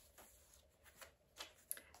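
Near silence, with a few faint, brief rustles of paper as the folded scrapbook-paper pages and flaps of a handmade journal are turned.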